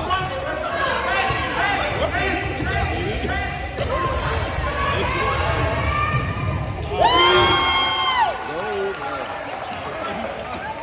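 A basketball bouncing on a hardwood gym floor amid spectators' chatter and children's voices echoing in a large gym. Near the end one high call is held for about a second, louder than the rest.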